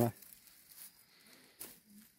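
A man's voice finishing a word, then near silence with faint outdoor background and a single faint click about one and a half seconds in.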